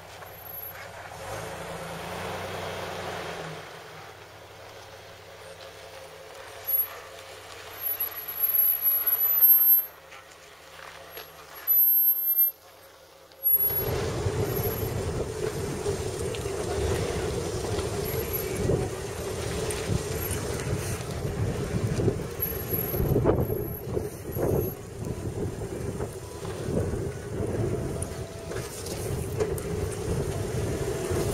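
Jeep Wrangler engine ticking over as it crawls through a dirt ditch, faint at first with a few short loud bursts. About 13 seconds in it gives way to much louder engine and drivetrain noise from a Jeep creeping over a rough dirt trail, with frequent knocks as it jolts over the ruts.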